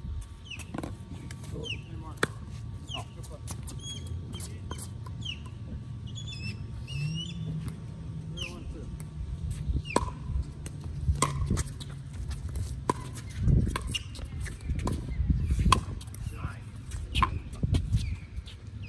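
Pickleball rally: sharp pops of paddles hitting the hollow plastic ball, coming irregularly and getting louder and closer together in the second half. Birds chirp with short falling calls in the first half.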